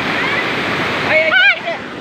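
Steady rushing of a river in flood, its muddy water running high. A little over a second in, a person's voice rises briefly over the water in a high, wavering shout.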